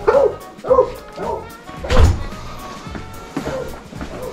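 A dog barking a few short times over background music, with a heavy thump about halfway through.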